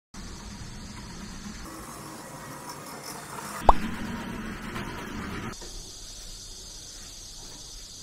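Steady high insect buzzing, typical of cicadas, over a low hum, with one sharp loud thump about three and a half seconds in. The background shifts abruptly a few times.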